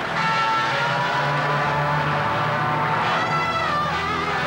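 Electronic synthesizer music of a car-advert soundtrack: a steady low drone under higher tones that rise slowly in pitch and drop away near the end.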